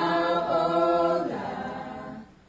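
Unaccompanied singing: one long held note that fades out about a second and a half in.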